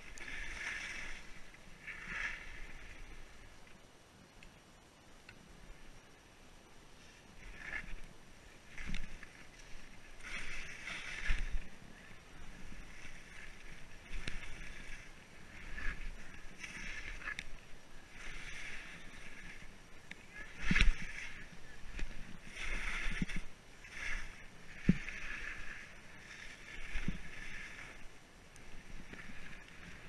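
Skis carving downhill through snow, a swishing hiss that swells and fades with each turn, every second or two. A few short thuds come through as well, the loudest about two-thirds of the way through.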